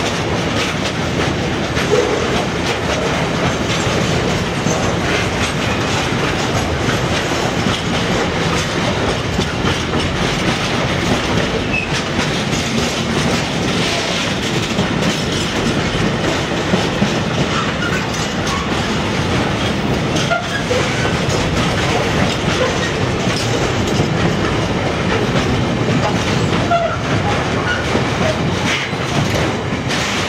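Intermodal freight train passing: flat wagons loaded with tank containers and shipping containers rolling by, their wheels running over the rails with a steady, continuous rumble.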